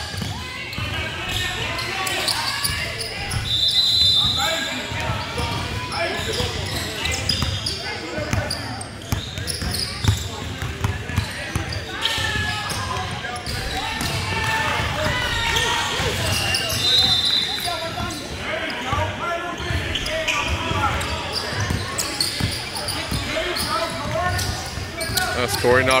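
A basketball bouncing on a hardwood gym floor, with the voices of players and onlookers echoing through a large hall. A few short high squeaks come through now and then.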